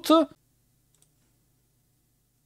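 The last syllable of a spoken word, then near silence with one faint computer click about a second in.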